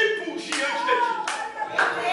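Three sharp hand claps, roughly two-thirds of a second apart, under raised voices.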